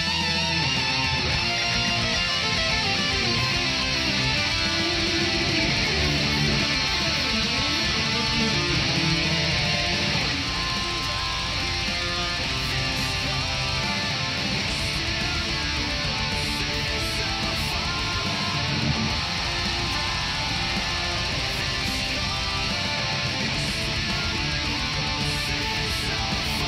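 Electric guitar playing fast, chugging heavy-metal riffs, continuous and dense throughout.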